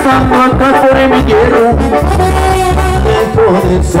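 Live Mexican band music: trombones playing over electronic keyboard and a drum kit with a steady beat.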